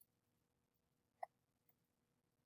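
Near silence: room tone, with one short, faint click just past a second in and a softer tick about half a second later.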